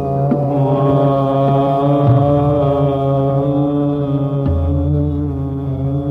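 Hindustani classical singing: a male voice holds one long sustained note in raag Kaushik Dhwani over a steady drone, with a few tabla strokes.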